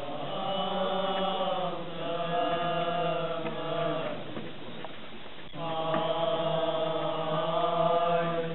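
Voices chanting a slow processional hymn in long held notes: two phrases, with a break of about a second and a half in the middle.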